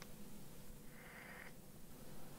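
Near silence: faint room tone, with a brief faint high tone about a second in.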